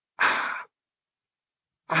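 A man's short, audible breath, like a sigh, lasting about half a second near the start, taken in a pause between sentences.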